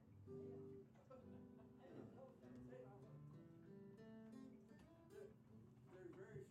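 Acoustic guitar played unaccompanied: single picked notes and chords that change about every half second.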